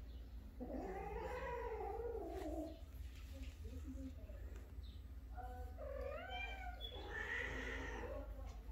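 Persian cat caterwauling during mating, a female in heat with a male: three long drawn-out yowls. The first starts about half a second in and lasts about two seconds, rising then falling in pitch. The second, with a wavering pitch, and the third come near the end.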